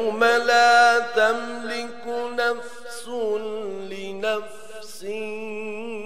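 A man's solo voice chanting a Muharram mourning elegy, unaccompanied, holding long notes with wavering turns and breaking off briefly between phrases.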